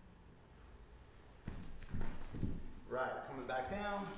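Quiet room tone, then a few heavy bare footsteps on a wooden floor mat from about a second and a half in, followed by a man's voice near the end.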